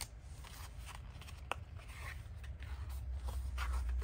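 Faint rustling and rubbing of paper stickers and a clear plastic bag being handled, with one small tick about a second and a half in, over a low steady hum.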